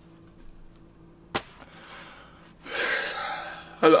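A man's single loud, noisy breath lasting about a second, coming after a sharp click. He starts speaking right at the end.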